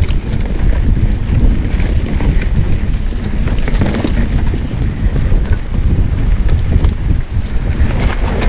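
Orange P7 steel hardtail mountain bike riding fast down a dirt forest trail. There is a steady low rumble of wind on the action camera's microphone and of tyres over the ground, with frequent short rattles and clatters from the bike over bumps.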